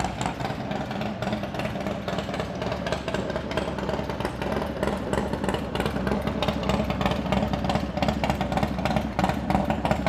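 Harley-Davidson Dyna's V-twin engine running steadily.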